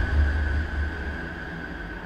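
Tail of a TV news programme's closing title stinger: a deep bass rumble dies away under a single held high tone, fading out through the second half.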